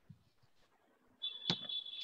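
Near silence for about a second, then a steady high-pitched tone comes in, with a single sharp click about a second and a half in.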